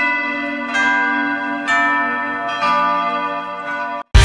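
A bell struck four times, about a second apart, each stroke ringing and fading before the next; the last stroke sits lower in pitch.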